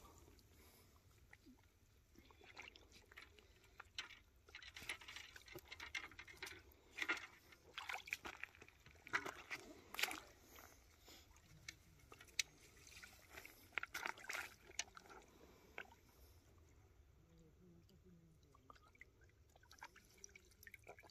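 Faint, intermittent splashing and sloshing of shallow water around a large carp held in a landing net, dying down in the last few seconds.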